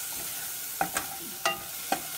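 Spice masala frying in oil in a stainless steel saucepan with a steady sizzle, stirred with a spatula that scrapes and knocks against the pan four times in the second half.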